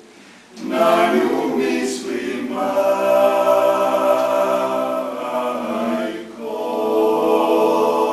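Male klapa ensemble singing unaccompanied in close harmony. Short breaks between phrases come just after the start and about six seconds in.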